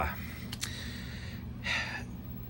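A man drawing a quick breath in between phrases, about three-quarters of the way through, over a steady low hum; two faint clicks come about half a second in.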